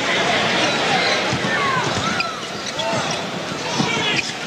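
Arena crowd noise during live basketball play. Sneakers squeak on the hardwood court a few times near the middle, and the ball bounces on the floor.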